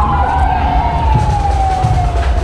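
A siren winding down, its pitch falling slowly and steadily, over a low background rumble.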